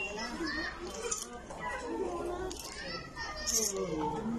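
Indistinct overlapping voices of children and adults talking and calling out, over a steady low hum.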